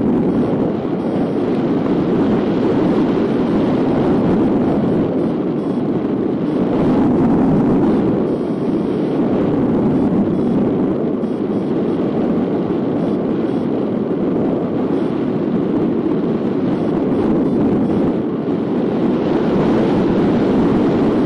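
Steady rush of wind over the microphone from a hang glider gliding at about 45 km/h, swelling a little about seven seconds in.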